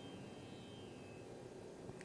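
Near silence in a pause between spoken sentences: faint room hiss, with a faint high ringing tone dying away over the first second or so.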